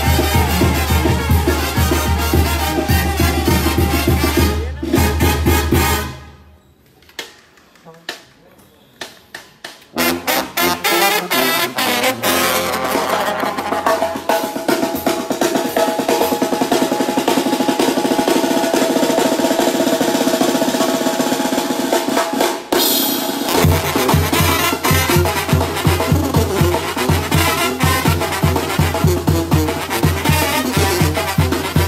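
Mexican brass band (banda) music: trumpets, trombones, sousaphone and drums playing loudly. About six seconds in the music stops; after a few quiet seconds with scattered drum hits, a second band starts with drums, then sustained brass chords, and the pulsing sousaphone bass comes back in about three-quarters of the way through.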